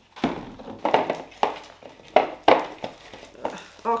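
Thickened slime being kneaded by hand and stirred with a spatula in glass bowls: a run of short, irregular sticky squelches and clicks, about two a second.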